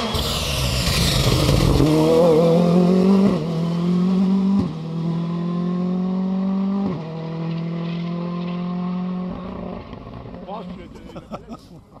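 Ford Fiesta R5 rally car passing close and accelerating hard away. The engine note climbs through each gear and drops sharply at several quick upshifts, then fades into the distance.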